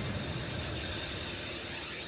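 Fading tail of a TV news intro jingle: an even hiss-like wash that slowly dies away, with no beat or tune left in it.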